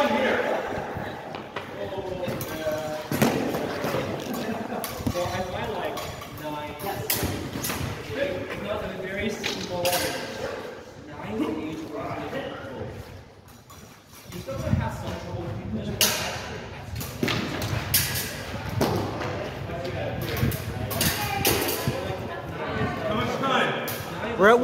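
Irregular thuds and knocks of foam practice swords striking as two fencers spar, with people talking throughout.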